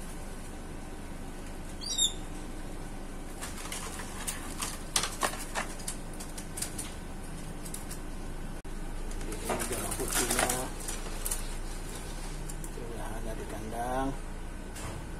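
Black-winged starling (jalak putih) flapping its wings inside a wire bird cage in short bursts, the strongest about ten seconds in. A single short, sharp high squeak sounds about two seconds in.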